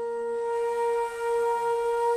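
Two bass Renaissance flutes sustaining long, steady tones, one note held throughout with a second tone sounding against it in a slow, drone-like duet.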